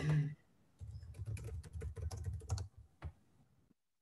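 Typing on a computer keyboard, a quick run of key clicks lasting about two seconds, picked up by a video-call microphone, then one more click before the audio cuts to dead silence. A laugh trails off just before the typing starts.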